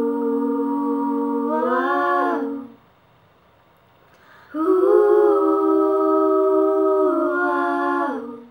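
A woman's unaccompanied voice holding two long wordless notes, hummed, each about three seconds and bending upward in pitch at the end, with a short pause between them.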